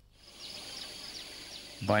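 Outdoor nature ambience comes in just after the start: a steady high-pitched insect drone, with short falling chirps repeating a few times a second over it.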